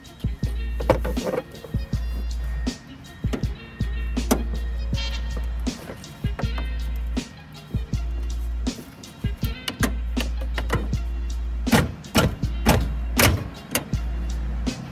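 Metal pry tool clicking, scraping and knocking against a plastic transmission cooler line quick-connect fitting as it works the retaining clip loose. The sharpest, loudest clicks come in a cluster near the end. Background music with a deep bass runs underneath.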